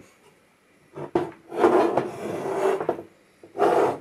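Handling noise from the Knight RF generator's metal chassis being moved on the bench: a sharp knock about a second in, then about a second and a half of scraping and rubbing, and a short rush of noise near the end.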